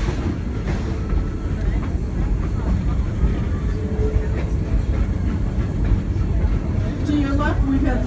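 Steam train running, a steady low rumble of the wheels and cars as heard riding just behind the locomotive. A man's voice starts near the end.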